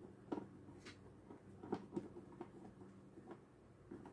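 Faint, scattered small clicks and taps of a screwdriver turning a terminal screw on a solar charge controller, clamping a wire into the terminal block.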